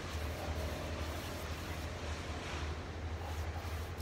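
Steady low rumble of heavy tree-service trucks working a street away.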